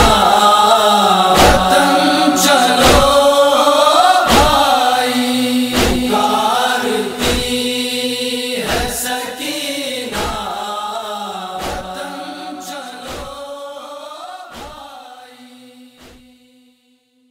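Voices chanting the wordless closing of a noha, a Shia lament, over regular thumps about every second and a half in the manner of matam, the rhythmic chest-beating that goes with it. The sound fades out steadily over the second half.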